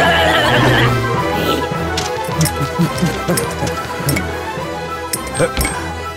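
Cartoon background music throughout, opening with a high, wavering squeal from a cartoon bunny character that stops about a second in.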